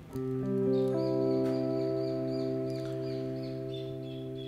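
Seven-string electric guitar in a clean tone playing a C major chord slowly arpeggiated: the notes come in one after another, low to high, within the first second, then ring on together and slowly fade.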